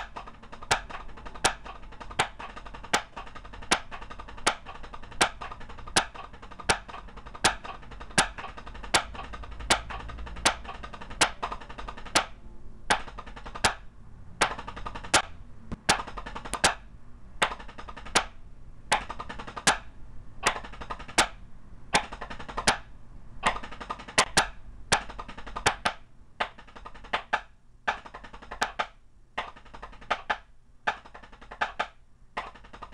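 Drumsticks on a drum practice pad playing stroke-roll rudiments, the nine stroke roll among them, in time with a metronome ticking at 80 beats per minute. The rolls stop briefly near the end while the ticks go on.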